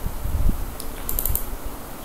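A few quick, light clicks of a computer mouse about a second in, over a steady low hum.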